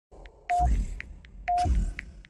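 Countdown-leader sound effect: a short mid-pitched beep with a low boom under it, once a second (twice here), with brief high ticks in between.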